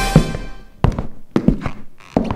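Theme music ends on a final hit. Then slow, heavy footsteps on a hard floor follow at walking pace, sharp echoing thuds, some struck in quick heel-and-toe pairs.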